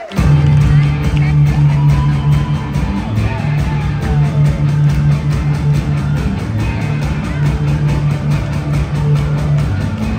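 Rock band playing live through a concert PA, coming in all at once with electric guitars, bass and drums on a steady beat at the start of a song. The sound is loud and full in the low end, heard from the audience.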